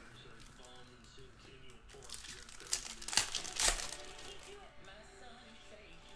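Foil trading-card pack wrapper being torn open and crinkled: a cluster of crackly rustles about two seconds in, loudest just past the three-second mark, then dying away.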